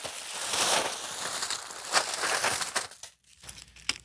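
A large plastic bag rustling as a heap of wrapped candy pours out of it onto a desktop, the wrappers crinkling; the noise dies down about three seconds in.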